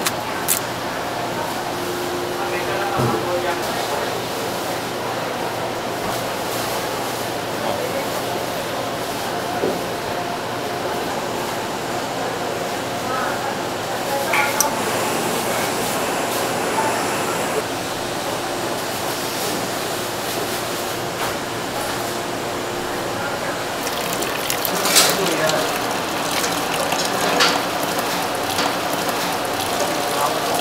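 Kitchen ambience: indistinct background voices over a steady hiss of running tap water, with a few sharp clicks and knocks.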